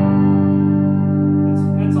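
Sterling by Music Man Cutlass electric guitar through an amp: one strummed chord left ringing, sustaining evenly.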